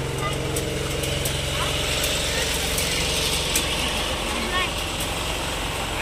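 Busy outdoor market ambience: an engine running steadily with a low hum that fades out about two seconds in, over a general background wash and distant voices.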